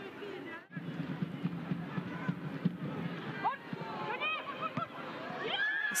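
Football stadium ambience: a low murmur of voices with scattered short shouts from players on the pitch, broken by a brief sudden gap about a second in.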